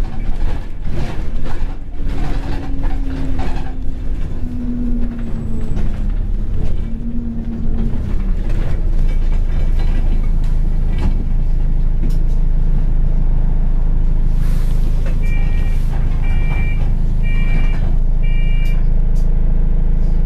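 Alexander Dennis Enviro 200 single-deck bus heard from inside the saloon: the diesel engine's pitch rises and falls as it pulls away, with rattles from the body, then settles into a steady drone. Four short beeps come about a second apart near the end.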